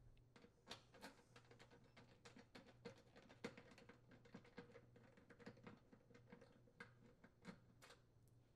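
Faint, irregular clicks and small scrapes of a screwdriver turning the mounting screws of an oven thermal cutout out of a sheet-metal duct.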